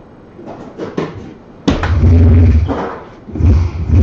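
Electronic soft-tip dartboard machine playing its dart-hit sound effects. A loud effect starts suddenly a little under two seconds in and lasts about a second, and another comes near the end.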